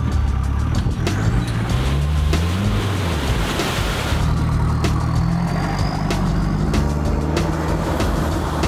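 Toyota Hilux 4x4 engine revving up and down as the truck drives off-road through ruts and mud, with a rush of tyre and mud spray noise around three to four seconds in.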